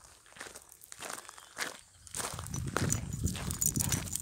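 Footsteps on a gravel track, an irregular crunching that is sparse at first and grows denser and louder about two seconds in.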